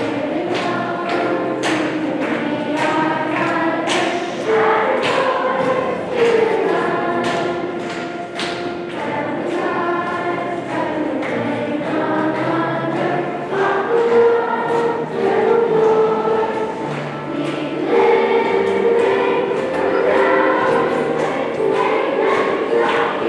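A large school choir of young students singing together, over an accompaniment with a steady beat.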